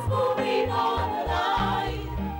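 A small mixed choir singing a gospel hymn over instrumental accompaniment with a pulsing bass line.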